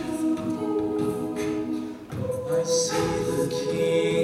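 Mixed-voice a cappella ensemble singing sustained chords, moving to a new chord about two seconds in.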